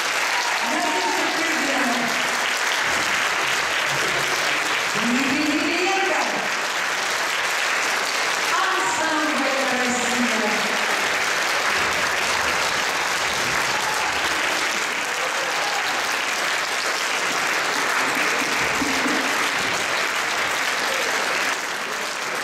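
Audience in a concert hall applauding steadily at the end of a song, with a voice heard over the clapping a few times in the first half.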